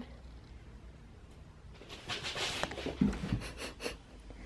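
A cat chewing on a piece of plastic: faint crinkling and crackling about halfway through, then a few soft knocks.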